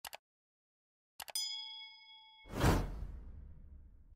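Subscribe-button animation sound effects: a short mouse click at the start, then another click and a bell-like ding that rings for about a second. The loudest part follows: a whoosh with a deep low boom about two and a half seconds in, fading out.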